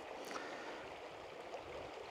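A shallow mountain stream flowing: a steady, soft rush of running water.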